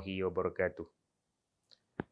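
A man speaking for less than a second, then a pause of near silence ended by a single short click.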